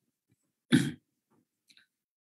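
A person clearing their throat once, a single short burst about a second in.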